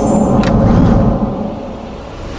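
Deep rumbling swell of title-sequence sound design, building to a peak about a second in and then easing off, with a brief sharp swish about half a second in.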